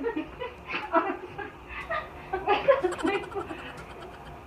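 Women laughing in short, uneven bursts, loudest a little past halfway.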